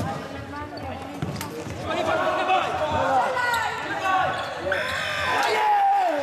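Futsal ball being kicked and bouncing on the wooden floor of a sports hall, with players shouting. Near the end a steady buzzer tone sounds for just over a second as the game clock reaches zero.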